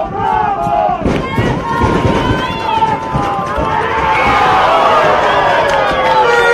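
Commentators laughing and talking over crowd noise from the stands. The noise thickens into a louder, denser wash about four seconds in.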